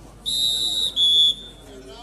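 Referee's whistle blown in two sharp blasts, a longer one and then a shorter, louder, slightly lower one, signalling the end of a raid as a point is awarded.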